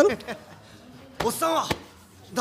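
Short bursts of Japanese anime dialogue, a voice speaking briefly at the start and again a little past a second in, with a sharp click near the end of the second phrase.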